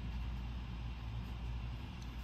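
Steady low hum of room background noise, with no other event.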